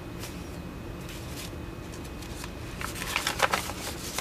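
Sheets of paper, prints coated in dried acrylic paint, rustling as they are shuffled on a stack and one is lifted. The handling is soft at first and turns into a flurry of crisp crackles about three seconds in.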